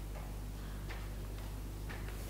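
A few faint, irregular footsteps on a hard floor over a steady low hum, as a person walks a few paces to the chalkboard.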